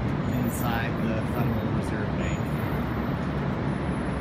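City street noise: traffic running with a steady engine hum, and passers-by talking.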